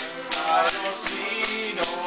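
A man singing a Newfoundland folk tune to a strummed 12-string acoustic guitar and a button accordion, with a jingling percussion stick (a Newfoundland ugly stick) keeping a steady beat.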